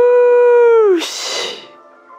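A man's long, high vocal howl of excitement: the voice swoops up, holds one pitch for about a second, then drops away into a breathy exhale. Faint music plays underneath.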